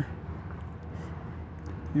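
Steady low background rumble with a faint hiss and no distinct event.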